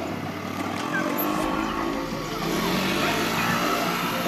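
Road traffic with a motor scooter running close by.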